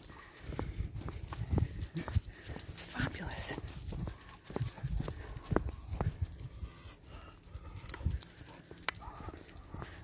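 Footsteps on a quiet tarmac lane, a soft, uneven thudding at about two steps a second, mixed with bumps from the hand-held phone. No traffic is heard.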